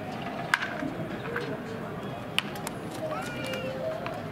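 Open-air ballpark practice ambience: a steady background of distant voices, broken by two sharp cracks about two seconds apart. A short high-pitched call sounds near the end.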